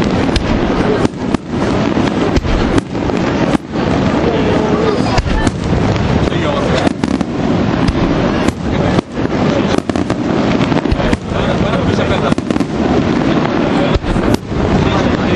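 Aerial fireworks display: shells bursting in a dense, almost continuous barrage of loud bangs and crackle, with only brief gaps between volleys.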